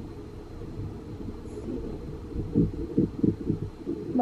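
Pen writing on notebook paper: a quick run of short strokes in the second half, over a low steady rumble.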